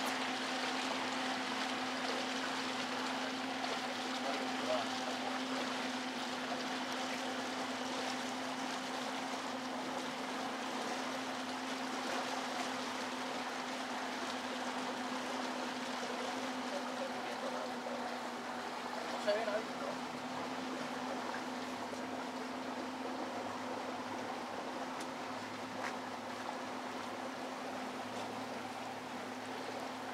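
Boat engine running at a steady low speed, a constant hum over a steady wash of water along the hull.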